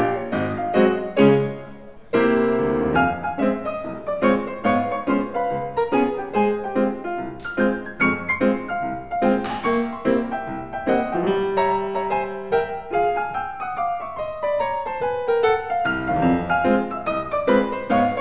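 Steinway grand piano played solo in old-time style: a busy run of quick struck notes and chords, with a brief break about two seconds in before a loud chord comes back in, a held note around the middle, and a descending run of notes a little later.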